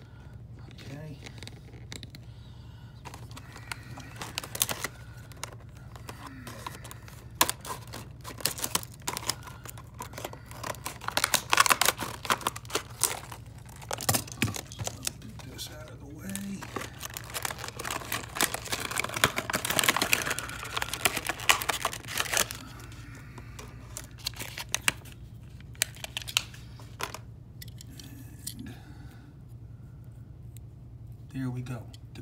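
A stiff plastic blister pack and its card backing being cut with scissors and pulled apart by hand, with crinkling, crackling and tearing of the plastic. The loudest bursts come about a third of the way in and again around two-thirds through.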